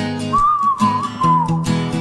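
Acoustic guitar strummed in a steady rhythm, with a short whistled phrase over it that wavers and slides down in pitch at its end.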